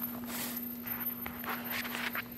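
Footsteps on gravel, a few scattered steps, over a steady low hum.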